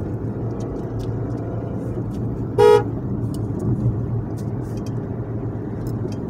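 A car horn sounding in one short toot about two and a half seconds in, heard from inside the car over the steady engine and road noise of driving.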